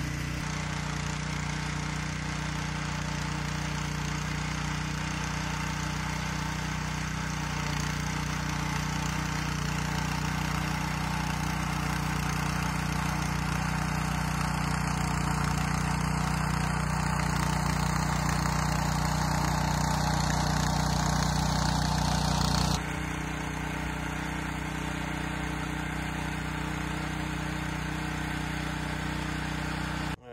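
The 196 cc Kohler single-cylinder engine of a rear-tine tiller running steadily under load as its tines churn garden soil. It grows gradually louder, then drops suddenly about two-thirds of the way through and carries on at the lower level.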